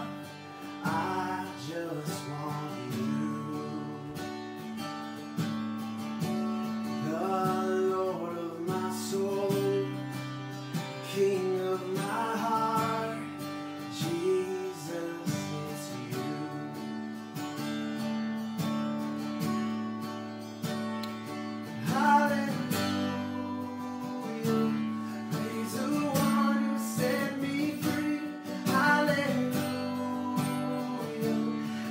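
A man singing a worship song, accompanying himself on a strummed acoustic guitar, the guitar chords ringing steadily under the vocal phrases.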